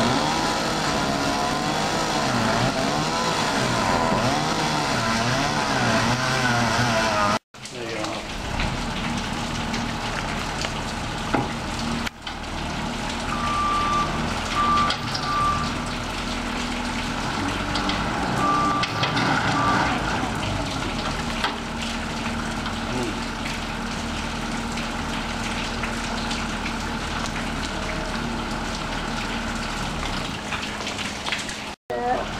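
Skid-steer loader engine revving up and down as it works the stump. After a cut about seven seconds in, it runs more steadily, with a few short high beeps a little past the middle.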